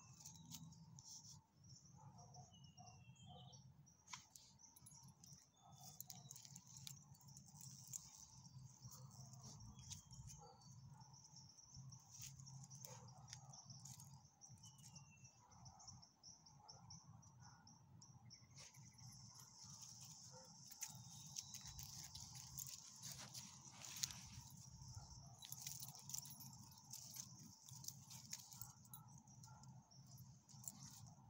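Near silence: a faint, steady high chirring of crickets, stronger from about two-thirds of the way through, with scattered small rustles and clicks of dogs moving over dry leaves.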